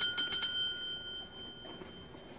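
A small bell rung in a rapid trill of strikes that stops about half a second in, its ring fading out over the next second: the speed-dating bell signalling the end of a three-minute round.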